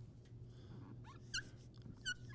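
Dry-erase marker squeaking faintly on a whiteboard as words are written: a few short squeaks about a second in and again near the end, over a low steady room hum.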